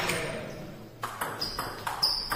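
Table tennis ball striking the bats and the table as a rally gets under way: about four sharp clicks, starting about a second in, once the room noise has faded.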